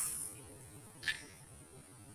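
Steady, faint, high-pitched insect buzzing, with one short tap about a second in as an earlier clatter fades out at the start.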